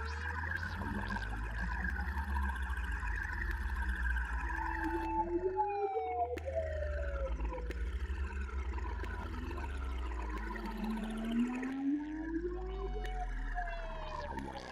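Live-coded electronic music: a deep synth bass drone under slow synth tones that glide up and down in pitch, with repeated falling sweeps higher up. The bass drops out briefly about six and about twelve seconds in.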